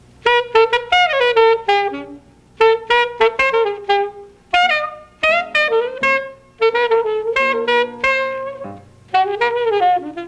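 Alto saxophone playing quick bebop phrases in short bursts, with brief breaks between them, over piano accompaniment in a live concert recording.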